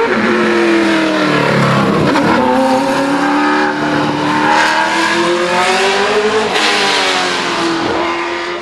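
Open-wheel single-seater race car's engine, its note dropping as it slows through a tight hairpin, then climbing steadily as it accelerates away, with a gear change about six and a half seconds in.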